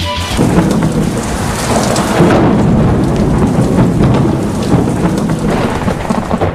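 A loud thunder-and-rain sound effect in the dance soundtrack, cutting in abruptly just as the music breaks off: a dense rumble with a hiss of rain, carrying no tune or beat.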